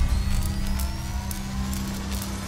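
Logo intro sound effect: a rising whine sweeps slowly upward in pitch over a steady low hum, with faint crackles.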